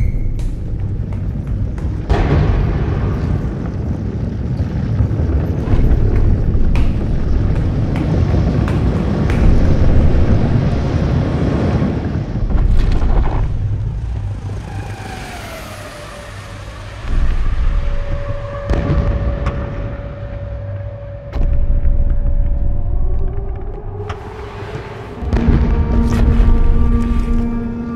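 Horror film sound design and score: a loud, deep rumble with sudden booming hits that eases off about halfway. A long held tone then runs on under more hits, and further held tones join near the end.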